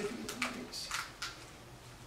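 A few short, faint crackles and clicks from ice cubes being handled in a plastic ice cube tray, with a soft murmur at the start.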